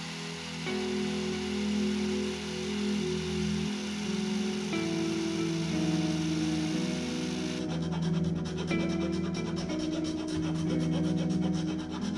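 A Craftsman electric sander running over a pine biplane-shaped birdhouse, a steady sanding hiss. About two-thirds in, it gives way to a hand file rasping along the wood in quick strokes, with background music throughout.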